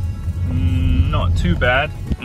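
Low, steady rumble of a car's engine and road noise heard inside the cabin while driving in Drive at low revs. A short drawn-out voice sound comes in about a second and a half in.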